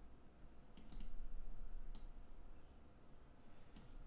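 A few faint, sharp clicks from computer input: a quick run of three just before a second in, a single click near two seconds and another near the end.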